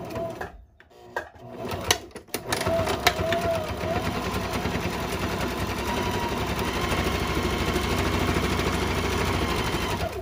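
Janome sewing machine stitching through folded cotton fabric along a casing edge. It runs in a few short bursts with clicks for the first two seconds or so, then runs steadily from about two and a half seconds in.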